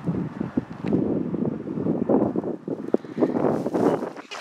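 Wind buffeting the microphone: an uneven, gusty rumble that swells and dips, with a few small clicks.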